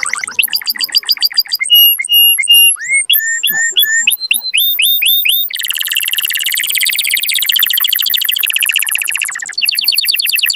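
Canary singing: a run of short phrases, each one note repeated several times. Quick notes give way to held whistles, then rising slurs, then a long, fast trill of about four seconds that breaks off shortly before the end.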